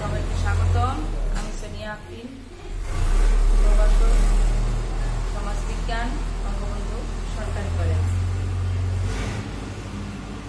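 A woman's speech over a heavy low rumble that swells about three seconds in and again near the end.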